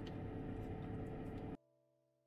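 Steady hiss of sliced courgettes frying in oil in a pan, cutting off abruptly about one and a half seconds in.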